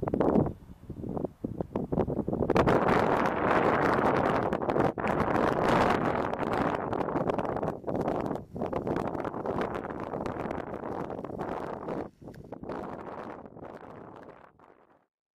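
Gusty wind buffeting the microphone: a loud rushing noise that swells and drops, dipping briefly several times and easing near the end.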